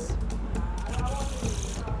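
Background music with a steady bass line, under faint crowd chatter and a brief patch of hiss about a second in.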